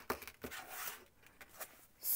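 Faint tabletop handling: a few light taps and soft rustling as crochet tools are picked up and yarn and crocheted pouches are moved on a table.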